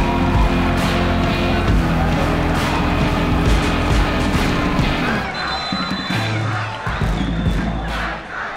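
Background music over cheering and shouting from a crowd celebrating a goal; the cheering dies down about five seconds in while the music goes on.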